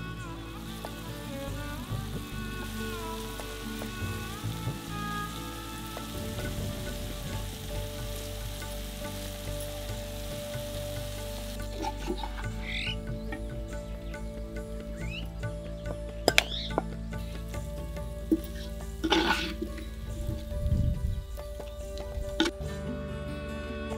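Chicken pieces sizzling steadily as they fry for about the first twelve seconds, then the sizzle stops. A few sharp clicks follow later on.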